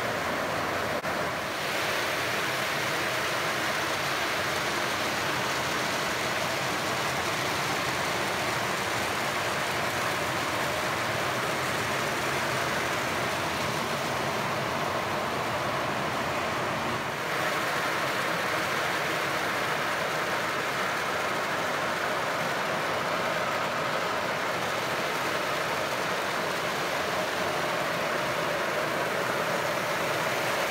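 Kadıoğlu walnut huller running: a steady rushing noise from its spinning brush-lined drum and water sprays as walnuts tumble inside.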